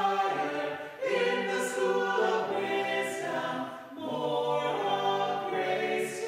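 A small choir of two men and two women singing through face masks from hymnals, held notes in long phrases with short breaks between lines about one second and four seconds in.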